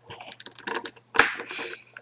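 Hands handling a wireless optical mouse and its USB receiver on a desk: a run of small, irregular plastic clicks and rustles, with one sharper click a little over a second in.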